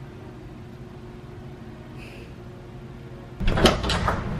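Low steady room hum, then about three and a half seconds in a sudden clatter as an interior door is handled and opened.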